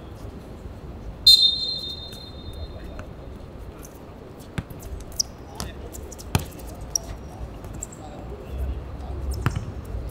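A referee's whistle blows once, a shrill blast of about a second just after the start. Then a football is kicked several times in passing play on a hard outdoor court, sharp knocks a second or so apart.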